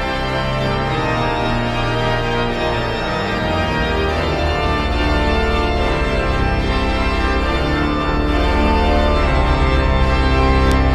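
Hauptwerk virtual pipe organ played on manuals and pedals: full sustained chords over a stepping pedal bass line.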